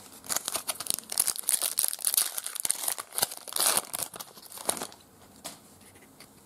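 Foil trading-card pack wrapper crinkling and tearing as it is opened by hand: a dense run of sharp crackles that stops about five seconds in.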